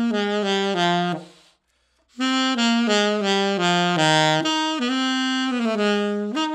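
Kilworth Shadow alto saxophone with a Claude Lakey mouthpiece playing two phrases of moving notes, each stepping down to a low note, with a short pause for breath about a second and a half in.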